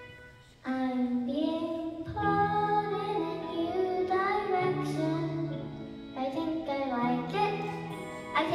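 A young girl singing into a microphone over an instrumental accompaniment. Her voice comes in under a second in, after a brief lull, and steady low bass notes join about two seconds in.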